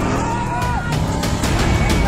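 Background music mixed with the engine of an off-road race vehicle and the shouts of spectators.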